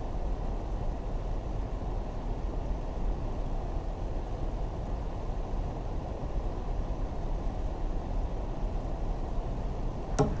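A steady low rumble with no distinct events in it.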